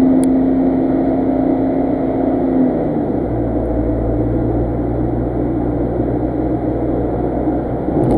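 Steady in-cabin noise of a car cruising along a highway, a low engine and road rumble. About three seconds in the tone shifts and the deep rumble grows stronger.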